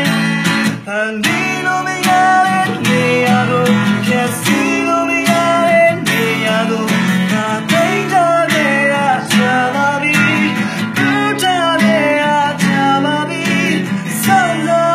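Acoustic guitar strummed in steady chords while a male voice sings the melody over it.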